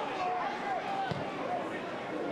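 Faint distant voices of players calling out on an open-air football pitch during play, over a low steady background hiss.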